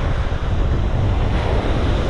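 Ocean surf breaking and washing up the beach, with wind buffeting the microphone in a heavy, steady low rumble.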